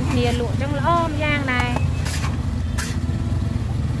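Voices talking in the first two seconds over a steady low rumble of street traffic.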